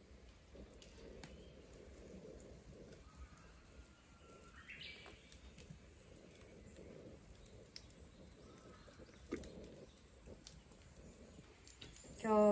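Near silence: faint low background noise with a few soft crackles from an oak-wood fire burning in a clay kamado, and one faint rising bird call about five seconds in.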